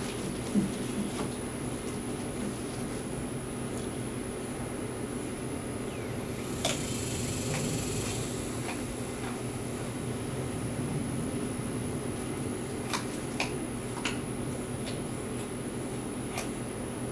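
Steady low mechanical hum, with a few short sharp clicks scattered through it.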